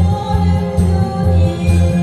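A woman singing a Korean trot song into a microphone over a backing track with a steady bass beat.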